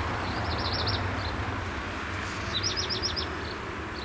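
Steady road traffic noise, with a small bird singing twice: two short phrases of quickly repeated high notes, about half a second in and again after two and a half seconds.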